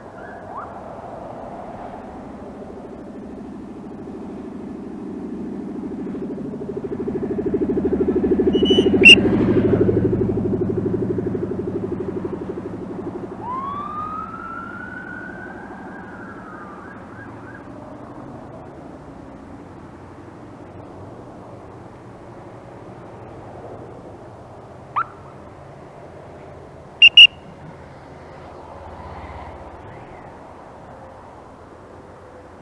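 A vehicle engine passes close, swelling to its loudest about nine seconds in with a sharp chirp at the peak. A police siren then gives one sweep that rises and levels off. Near the end come two short, loud siren chirps.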